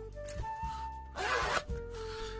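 Zipper on a pleather microphone carrying case being pulled shut in one quick stroke lasting about half a second, a little after a second in.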